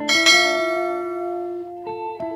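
A bright bell chime sound effect struck once, fading away over about a second and a half, over soft background guitar music.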